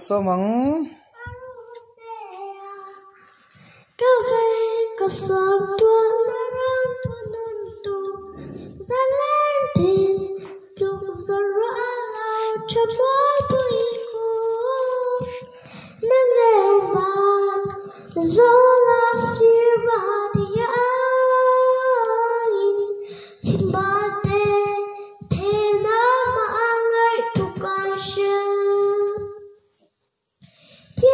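A young girl singing a slow song solo into a handheld microphone, in phrases with short breaths between them. The singing is quieter for the first few seconds and grows full and loud about four seconds in.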